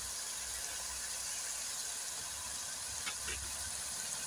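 Mutton keema sizzling gently in a pot on the stove: a faint, steady hiss with a low rumble underneath.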